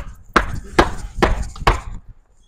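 A run of about five dull thumps, evenly spaced about half a second apart.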